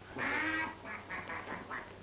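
A person quacking like a duck: one long quack, then several short ones in quick succession.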